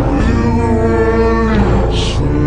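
Electronic music: a single held, pitched note lasting about a second and a half over a low steady drone, with a short noisy burst near the end.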